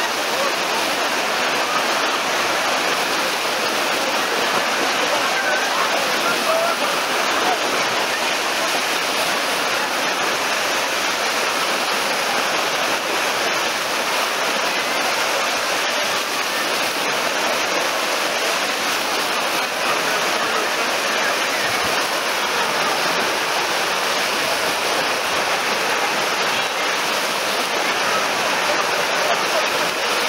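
Wave pool running: artificial waves breaking and rushing across the pool in a steady, loud wash of churning water.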